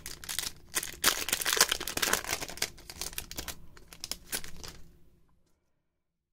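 Foil Pokémon trading card booster pack crinkling and crackling as it is torn open by hand, loudest in the first couple of seconds and dying away about five seconds in.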